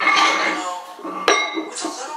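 Metal barbell weight plates clanking against each other as one is picked up from a stack: a loud clank at the start and a sharper one a little over a second later, each left ringing.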